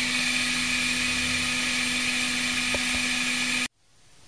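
Dremel Digilab 3D45 3D printer humming steadily, with a thin steady whine above the hum, cutting off abruptly near the end.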